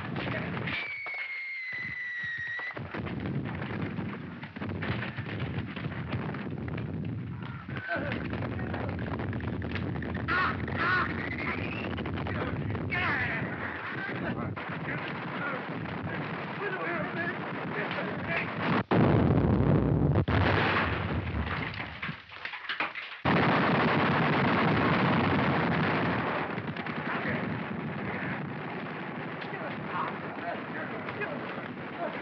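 Battle sound effects on an early-1930s film soundtrack: shell explosions and gunfire, with a high cry about a second in and shouting around ten seconds in. The loudest blast comes a little past halfway, followed by a long rumble and then another loud stretch of explosion noise.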